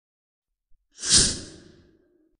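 A woman's single heavy, breathy sigh, starting sharply about a second in and trailing off within under a second.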